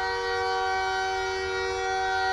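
A horn sounding one steady chord of several pitches, held without change throughout.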